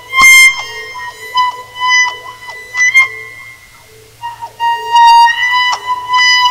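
Les Paul electric guitar played with a cello bow: a sustained high note swelling again and again with each bow stroke, with a sharp attack just after the start and a quieter dip about two thirds of the way through before the note swells back loud.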